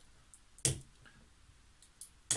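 A bottle opener clicks once, sharply, against the wax-sealed top of a beer bottle a little over half a second in, with a few faint ticks around it as it works at the seal.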